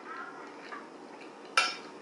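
A single sharp clink of a metal fork against a plate about one and a half seconds in, ringing briefly, over a low, quiet background.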